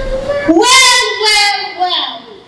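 A girl's voice over a microphone in a drawn-out, sing-song delivery. It swoops up about half a second in and holds long notes, then stops just before the end.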